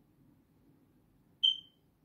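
A single short, high electronic beep about one and a half seconds in, with a sharp start and a quick fade, over faint low room hum.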